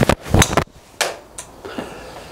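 Titleist TS3 titanium driver striking a golf ball off a hitting mat: a sharp crack about half a second in, then a second sharp knock about a second in with a short ringing tail. It is a solidly struck drive.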